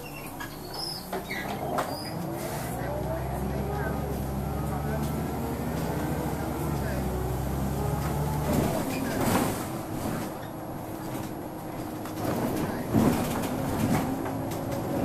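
Interior sound of a Wright Solar single-deck bus pulling away from a stop: the diesel engine drones under load while a rising whine climbs as the bus gathers speed, with the low drone dropping away suddenly about two-thirds of the way through as the ZF automatic gearbox changes up. Body rattles and knocks follow as the bus runs on.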